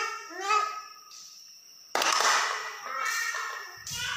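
A high voice singing unaccompanied in Red Dao (Iu Mien) folk style, a phrase of gliding notes that ends about a second in. About two seconds in, a sudden burst of noise follows and lasts over a second.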